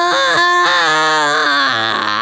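A rock song's lead vocal holding one long sung note that slides down in pitch near the end, with the bass and drums briefly dropped out.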